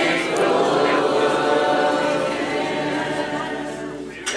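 A group of voices sings the drawn-out last notes of a drinking song together and fades out near the end.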